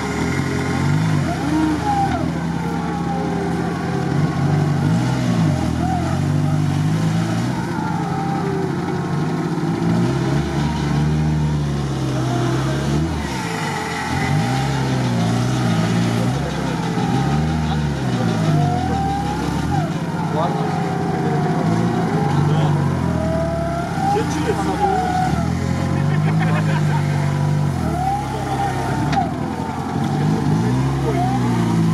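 Suzuki Samurai's engine revving up and down again and again as the off-roader grinds slowly forward through deep swamp mud.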